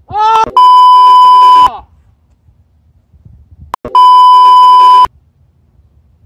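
Two loud, steady 1 kHz censor bleeps, each about a second long, with a short rising shout of a man's voice just before the first: edited-in tones covering swearing.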